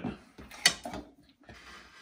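Small kitchen items handled on a countertop: one sharp click a little over half a second in, amid brief light clatter.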